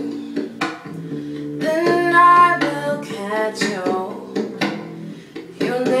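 A teenage girl singing a slow pop song over a plucked acoustic guitar accompaniment, which comes from a backing track because she is not playing. The sung phrases come in two short lines, about a second and a half in and again past the middle, while the guitar chords carry on underneath.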